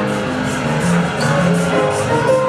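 Carousel music playing: held notes that change pitch over a steady beat.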